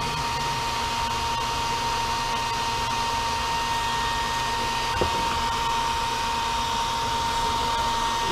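Handheld hair dryer running steadily: a constant blowing hiss with a steady whine. There is a faint click about five seconds in.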